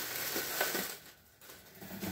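Clear plastic packaging crinkling as it is handled and lifted out of a cardboard box. The rustle lasts about a second, then dies down to faint handling sounds.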